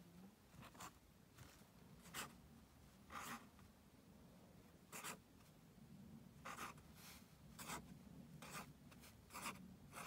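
Felt-tip pen strokes on paper: faint, short scratches about once a second as ticks and hearts are drawn.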